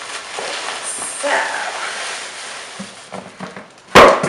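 Paper and tissue-paper packaging rustling and crinkling as a clothing bundle is pulled out of a large mailer, with a sharp, loud click just before the end.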